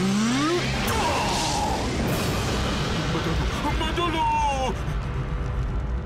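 Cartoon soundtrack: music mixed with sound effects and character voices, with a rising glide at the start and a falling pitched cry about four seconds in.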